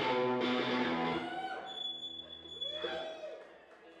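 Shoegaze rock band playing live with electric guitars, bass and drums. The full band stops about a second in, leaving guitar chords ringing and fading, with a thin high steady tone over them.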